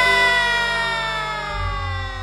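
A woman's amplified singing voice holds one long note that slides slowly down in pitch and fades. A low thump comes about one and a half seconds in.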